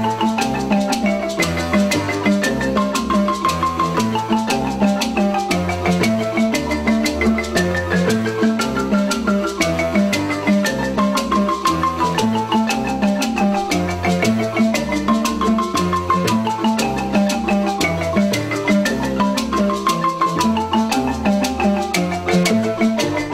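Marimba ensemble playing a song together: several marimbas in interlocking parts, a fast, steady stream of mallet strikes with repeating phrases on top and deep bass-marimba notes underneath.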